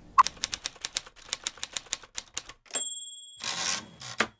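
Typewriter sound effect: a quick run of keystrokes, about eight a second, then the margin bell dings and the carriage return slides back.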